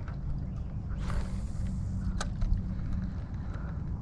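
A cast with a spinning rod: a brief whoosh about a second in as the lure flies out and line pays off the reel, then a single sharp click about a second later. Under it runs a steady low rumble of wind on the microphone.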